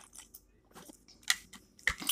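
Close-miked gulps and swallows of water drunk from a bottle, a string of short wet clicks, the loudest past the middle, with a sharper click just before the end.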